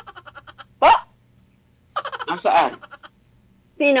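People laughing in short bursts through a video-call connection, with a brief rising vocal exclamation about a second in.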